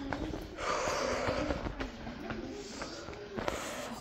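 A person's breathing, with one long rushing exhale about half a second in, over a few faint clicks and taps.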